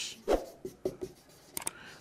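Marker pen writing on a whiteboard in a series of short strokes, with a brief high squeak near the end.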